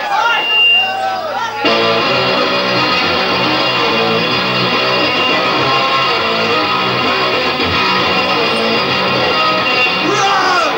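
A punk rock band playing live: after a moment of voice, distorted electric guitars and drums come in together at full volume just under two seconds in and play on steadily as the song starts.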